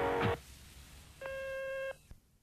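The last note of a sung answering-machine greeting cuts off, and after about a second of quiet the answering machine gives one steady electronic beep lasting under a second, the signal to start leaving a message.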